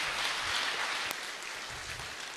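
Congregation applauding, a dense clapping that eases off a little after about a second.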